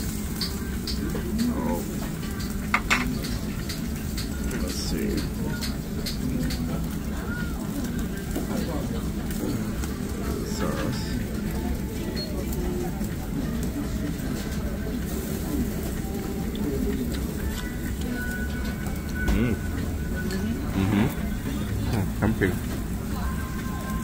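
Meat sizzling on a tabletop barbecue grill over a steady restaurant din of background chatter and music, with a couple of sharp clicks about three seconds in.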